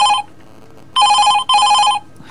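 Telephone ringing in a double-ring pattern: the tail of one ring ends just after the start, then after a pause a full pair of warbling electronic rings comes about a second in.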